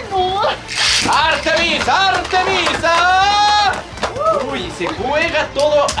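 An excited man's voice exclaiming and drawn-out shouting over a Beyblade battle, with one long held shout about three seconds in. Faint sharp clicks from the spinning tops striking in the plastic stadium sit beneath it.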